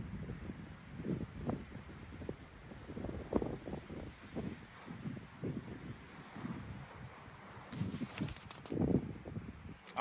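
Faint, indistinct voices outdoors, with a brief rustle of wind or handling on the phone microphone near the end.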